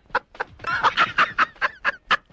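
A man's laughter, stifled behind his hand: a fast run of short, pitched bursts, about six a second.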